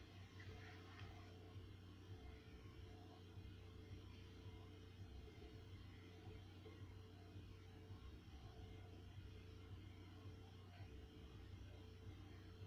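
Faint, steady low bass rumble of a neighbour's loud music coming through the walls, with little more than the bass audible.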